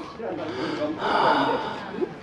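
Indistinct voices of several people talking, with breathy sounds and no clear words.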